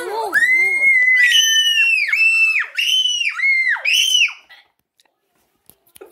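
A child screaming in play: one long, very high-pitched shriek, then about five shorter ones, each dropping in pitch as it ends. The screams stop about four and a half seconds in, and silence follows.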